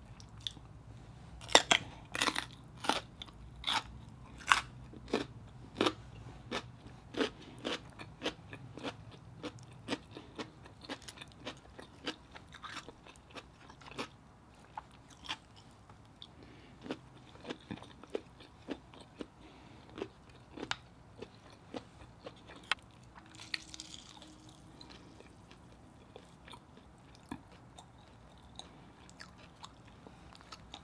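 Close-up crunching and chewing of a raw red radish: sharp crunches about two a second for the first ten seconds, then sparser and softer chewing.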